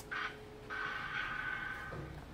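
Opening of a video clip's soundtrack playing over the room's speakers: a short sound just after the start, then a steady high tone held for over a second.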